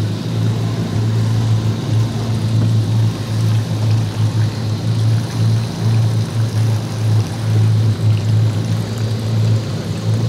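Yamaha 242 Limited jet boat's engines idling, a steady low drone that wavers in level as the boat steers slowly between markers.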